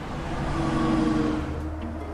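A bus driving past on a road, its engine and tyre noise rising to a peak about a second in and then fading, with background music underneath.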